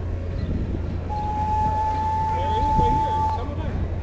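Steam passenger train arriving: a low rumble runs underneath, and a single steady high tone sounds for about two seconds from about a second in.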